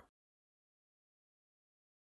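Near silence: the soundtrack is blank, with no audible sound.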